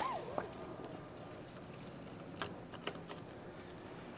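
Forklift seat belt being pulled across and buckled: mostly quiet, with two faint clicks about two and a half and three seconds in.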